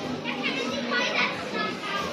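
Background chatter of several people, including children's voices, overlapping with no clear words.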